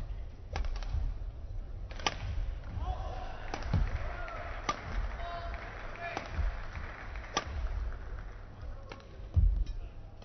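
Badminton rally: a racket strikes the shuttlecock about seven times, a sharp crack every second or so, with low thuds of the players' footwork on the court between the hits.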